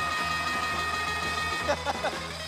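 Background murmur of an arena crowd, with a steady high tone held until shortly before the end and brief voices near the end.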